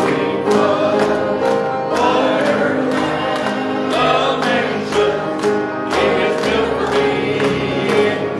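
Gospel music: a choir singing over instrumental backing with a steady beat.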